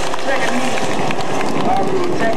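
Indistinct voices of people talking over a steady background din.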